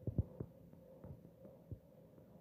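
A handful of faint, irregular low thumps, five or so within under two seconds, over a faint steady hum.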